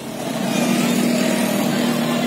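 Motor scooter engine running with a steady hum as it rides past.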